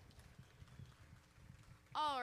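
Near silence: faint, irregular low footfalls and shuffling of children moving about on the stage and grass.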